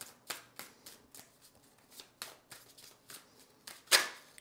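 A deck of tarot cards shuffled by hand: a quick run of crisp card slaps, about three a second, with one louder slap near the end.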